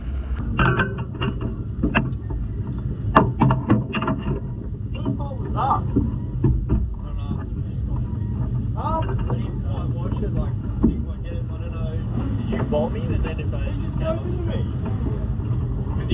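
A steady low engine rumble, with several sharp clanks and knocks in the first few seconds and indistinct voices over it.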